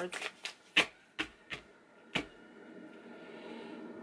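A deck of tarot cards being shuffled by hand: about seven sharp card snaps and slaps over the first two seconds, the loudest near the first second. After that only a faint steady background remains.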